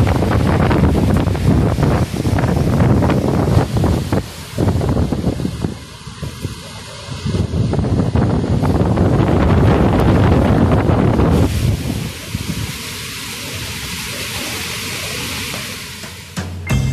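Gusting typhoon wind tearing through palm and other trees and buffeting the microphone: a heavy, rumbling rush that swells and drops with each gust, turning steadier and hissier for the last few seconds.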